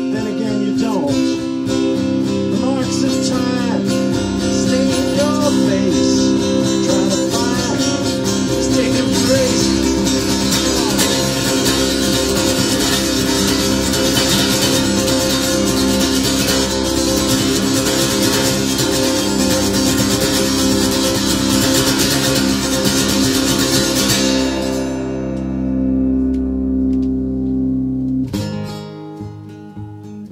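Acoustic guitar played live in a loud, densely strummed instrumental passage, with chords ringing on under the strumming. About two thirds of the way in the bright strumming stops and a low ringing drone is left. The drone fades, and fresh strummed chords come in near the end.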